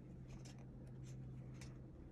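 Faint rustling and light ticks of paper pages being turned in a softcover coloring book, over a steady low hum.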